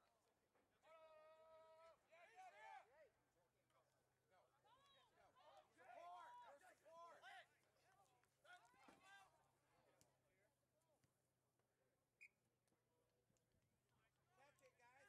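Very quiet: faint, distant shouting voices, beginning about a second in with one long held call, then scattered short shouts.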